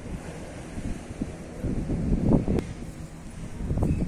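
Strong wind buffeting the microphone: a gusty low rumble that swells and falls, loudest a little past halfway.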